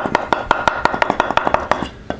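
A worn bimetal hole saw in a drill press grinding into the bottom of a Pyrex dish with a wet silicon carbide grit slurry. It makes a rapid, gritty ticking of about ten ticks a second over a faint steady whine, and the ticking stops near the end.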